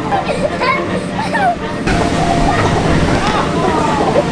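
Young children's voices calling out and squealing as they play, over the steady background noise of a large play hall. About two seconds in, the background changes to a louder low rumble.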